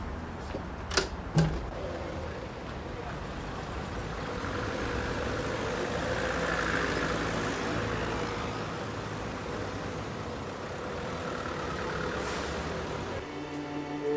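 City street traffic: buses and lorries running past in a steady rumble that swells and fades in the middle, with a couple of sharp knocks about a second in. Bowed string music comes in near the end.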